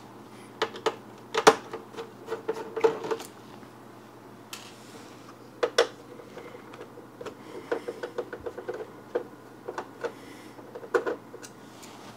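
Screwdriver backing out the metal screws that hold the stand base of an all-in-one PC: a string of sharp clicks and light ticks as the driver turns, slips on the screw heads and the screws come loose, the loudest click about a second and a half in.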